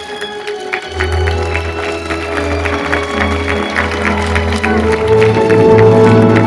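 Music with a steady bass line playing, with a crowd clapping over it.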